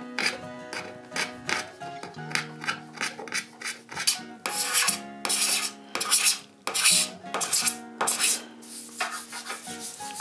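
Hand-held steel card scraper pushed in short repeated strokes along a wooden arch, taking fine shavings; the strokes are light at first and become louder and longer from about halfway in. Background music plays underneath.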